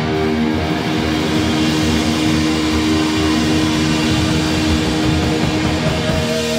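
Heavy metal band playing live: distorted electric guitars through Marshall amps over bass and drums, with a long held note ringing through most of the passage.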